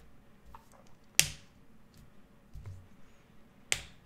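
Two short, sharp clicks, one about a second in and one near the end, over quiet room tone.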